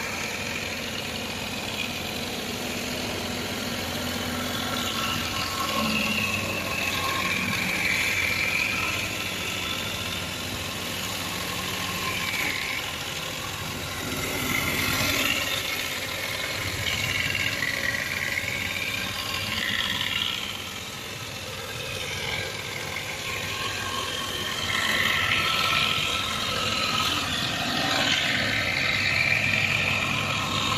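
Wood round-rod making machine running, its rotary cutter shaving a wooden pole into a round rod as the feed rollers push it through: a steady machine noise with a whine that wavers up and down as the cut varies.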